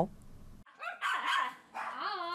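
A dog barking, loudest about a second in, then a drawn-out yelp that begins near the end.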